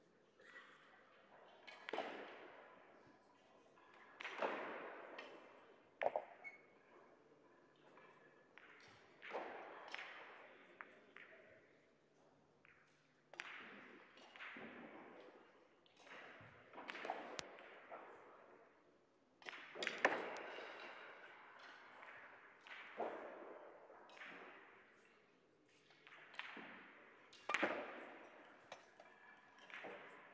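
Russian pyramid billiard balls clacking against each other and against the cushions, a dozen or so sharp knocks scattered irregularly, each dying away in a short echo.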